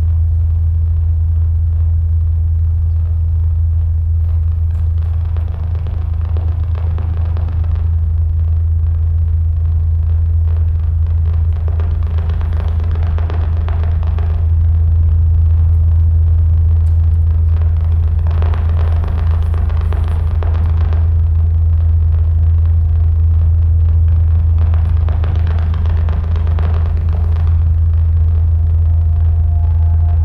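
Playback over loudspeakers of an electroacoustic piece built on recordings of a wind-played Aeolian harp: a loud, steady low drone with swells of noise rising and falling every few seconds.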